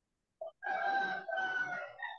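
A rooster crowing: a short note, then one long call that falls slightly in pitch and breaks briefly about halfway.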